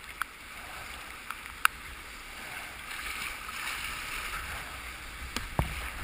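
Whitewater rapids rushing steadily around a kayak, with a few sharp ticks, the loudest about a second and a half in. Paddle strokes splash and thump against the water near the end.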